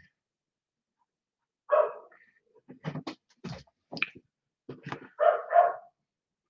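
A dog barking: one bark, then after a run of sharp knocks and clicks, two quick barks near the end.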